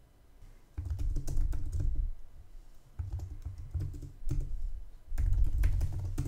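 Typing on a computer keyboard: keystrokes in three quick bursts, starting about a second in, about three seconds in and about five seconds in.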